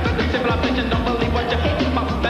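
Upbeat dance-pop song with a steady beat and a male voice singing over it.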